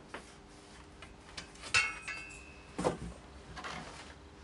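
Several light knocks and clicks of small objects being handled on a work surface. One of them is followed by a brief thin ringing tone lasting about a second.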